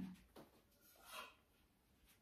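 Near silence: quiet kitchen room tone with a faint tick and a brief soft rustle.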